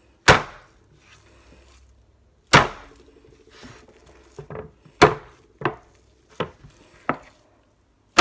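Sourdough dough slammed by hand onto a floured wooden board during kneading: three heavy thuds about two and a half seconds apart, with lighter knocks between them.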